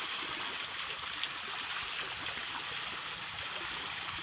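A school of milkfish (bangus) thrashing at the pond surface in a feeding frenzy on freshly scattered feed: steady, continuous splashing of water.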